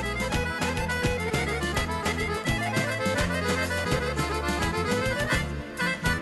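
Bulgarian folk music played by an instrumental band: a fast run of evenly paced notes over a steady bass line, with a brief dip near the end.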